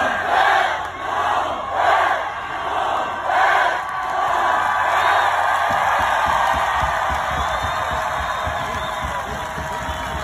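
Large crowd cheering and yelling, in three loud swells over the first few seconds and then a steady roar.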